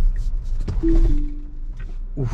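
A Tesla Model Y's cabin alert chime: a short two-note electronic tone stepping down in pitch, heard over the steady low rumble of road noise inside the car.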